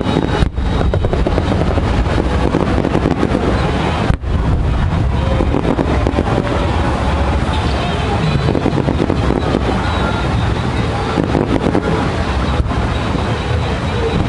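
Loud, steady rush of wind on the microphone over distant fireworks bursts, with crowd voices mixed in. The sound cuts out briefly twice, about half a second in and about four seconds in.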